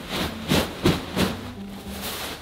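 Bead-filled bean bag being pushed and kneaded, its beads and fabric cover rustling and shifting in about four quick bursts, as the filling is worked to spread evenly.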